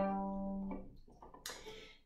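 Open G string of a violin plucked pizzicato, its low note ringing and dying away within about a second. A faint knock follows about a second and a half in.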